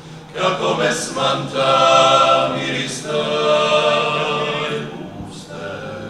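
A klapa, an unaccompanied Dalmatian male vocal group, singing in close harmony. Held chords swell about half a second in and soften again near the end.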